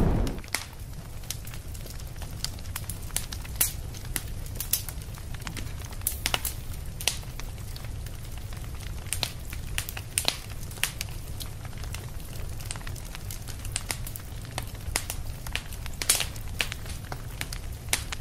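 Irregular crackling and pops over a steady low rumble, a sound effect laid under the trailer's captions.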